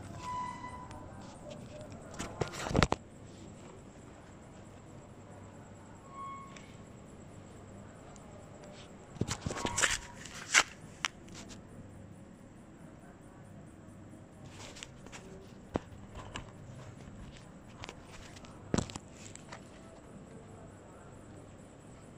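Close handling noise against the phone's microphone: fabric rubbing and scattered knocks and clicks, loudest in a cluster about ten seconds in. Two brief faint squeaks come near the start and about six seconds in.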